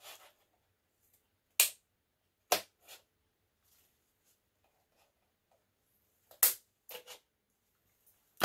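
Handheld hole punch cutting two holes through a paper windsock: sharp clicks, two a little after the start and two more near the end.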